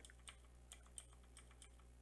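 Near silence with about six faint, irregular clicks from computer keyboard and mouse use, over a low steady hum.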